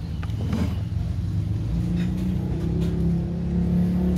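A motor vehicle engine running, a steady low hum that grows a little louder and higher a little before halfway. A few light clicks of plastic container lids being handled sit over it.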